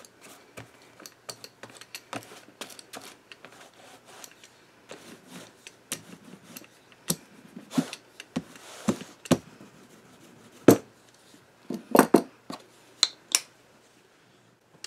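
A rubber brayer rolled across journal paper, with irregular clicks, taps and knocks from the roller and the handling. The knocks grow sharper and more frequent in the second half, the loudest coming about three-quarters of the way in and near the end.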